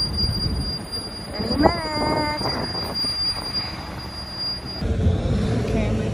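Street traffic: a steady rumble of passing cars and trucks, with a brief pitched squeal that rises and then holds for under a second, about a second and a half in. Near the end the sound changes abruptly to a windier mix.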